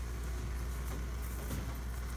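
A steady low background hum with a faint hiss, unchanging throughout; no distinct handling sounds stand out.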